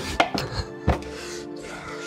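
Irregular knocks and clatters of things being handled and rummaged in a bedside drawer, the loudest just under a second in, over background music with held tones.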